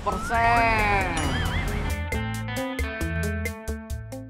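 Edited-in comedy sound effects: a long bleat-like call that rises and falls, then a wobbling whistle tone. From about halfway, background music with a quick regular beat.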